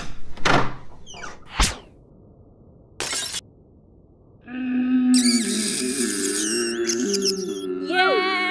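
Soundtrack of a stop-motion film: a few short sharp hits in the first two seconds and a brief noisy burst about three seconds in, then music with held, gently wavering tones starting about four and a half seconds in.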